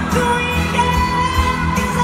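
A woman singing a ballad live with her band, through the PA of a large arena, holding a long note through the second half.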